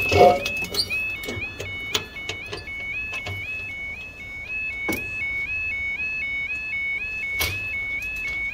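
Level crossing audible warning alarm sounding a two-tone warble that repeats about twice a second while the barrier lowers: the signal that a train is due and the road is closing. Two sharp knocks come in, one about halfway through and one near the end.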